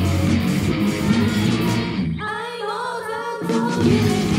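Live rock band playing: electric guitars, bass and drums under a female lead vocal. A little past halfway the band cuts out, leaving the voice singing over one held low note, and the full band crashes back in about a second later.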